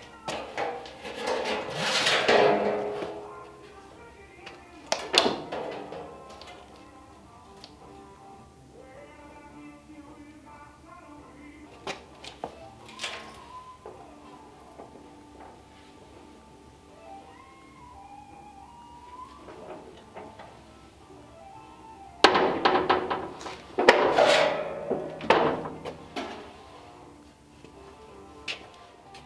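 Manual sheet-metal brake folding the edge of a steel door skin. Metal clanks and rattles come in bursts: near the start, around five seconds, around twelve seconds, and in a longer run a few seconds before the end, with background music between them.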